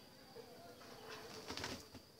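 A dove calls low against a steady, high insect drone, with a short rustling scrape about one and a half seconds in.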